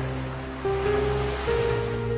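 Slow, calm background music with long held notes. A broad wash of noise swells up and dies away across the first half.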